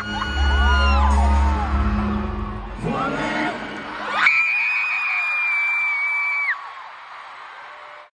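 Live pop band music in an arena, with fans screaming and whooping over it. The band cuts off about four seconds in, leaving a long high crowd scream that drops away about two seconds later.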